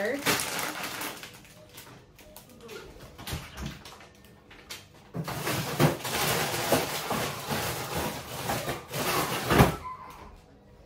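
Groceries being put into the bottom freezer of a fridge-freezer: plastic packaging rustling and freezer drawers sliding and clicking, with one sharp knock near the end.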